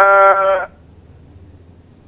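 A man's voice over a telephone line, a drawn-out syllable held at one pitch for under a second, before a pause.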